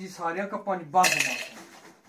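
Ice cubes clattering into a plastic blender cup, loudest about a second in, with voices talking around it.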